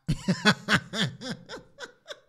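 One person laughing in a run of short 'ha' pulses, about four a second, growing steadily fainter.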